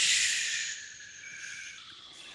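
A woman blowing a long breathy 'whoosh' into the microphone to imitate the wind. The hiss is loudest at the start and fades out over about a second and a half.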